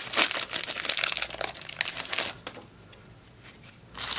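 Foil trading-card booster pack crinkling and tearing as it is ripped open by hand. A dense crackle lasts about two and a half seconds, then dies down.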